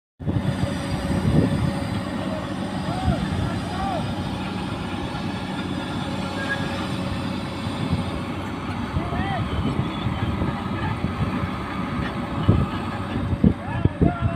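Komatsu hydraulic excavator's diesel engine running steadily while it lowers a concrete sheet pile slung from its bucket, with a few sharp knocks near the end.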